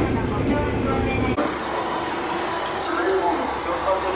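A steady low rumble inside a train carriage, which cuts off abruptly about a second and a half in. Lighter station-platform ambience follows, with distant voices and a train idling.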